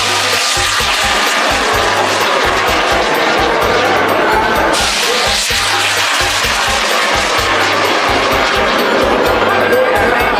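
A bang fai, a homemade festival rocket, firing from its launch tower: a loud rushing roar starts suddenly and surges again about halfway through. Festival music with a steady beat runs underneath.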